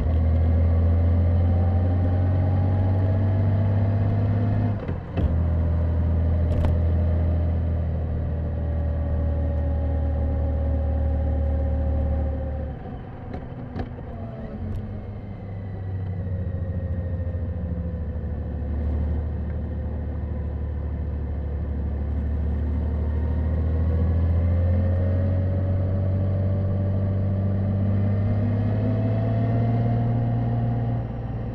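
Honda GL1800 Goldwing's flat-six engine running at moderate road speed, heard from the rider's helmet. Its pitch falls gradually through the first half, the sound dips briefly as the throttle eases off about halfway through, then its pitch climbs again as the bike picks up speed near the end.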